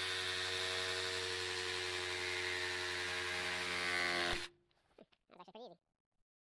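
Reciprocating saw (Sawzall) cutting through a large-diameter PVC pipe, running at a steady speed with the blade's stroke and plastic cutting noise, then switching off abruptly about four and a half seconds in.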